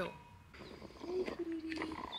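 A dove cooing: one short, low call about a second in, dropping slightly in pitch and then holding steady.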